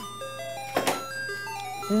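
A light chime-like jingle, a simple tune stepping from note to note in a glockenspiel-like tone, with one short thud or click about a second in.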